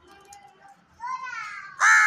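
House crow cawing: a call about a second in, then a louder caw near the end.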